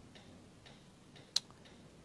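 Faint, regular ticking, about two ticks a second, with one sharper click about halfway through.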